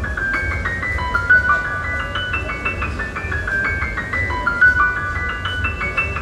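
Solo jazz piano: a grand piano played high up the keyboard in quick, repeated figures of short notes, with a low rumble underneath.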